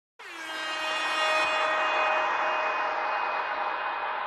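A long held chord of several tones that dips in pitch as it starts, then holds steady.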